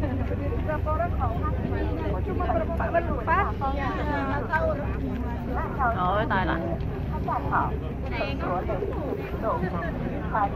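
Low, steady drone of a ferry's engine running, under the chatter of a crowd of passengers.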